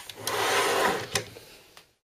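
Rubbing and sliding noise of cooler parts or packaging being handled on a table, with a click near the start and another knock a little past one second in, fading out before the sound cuts off.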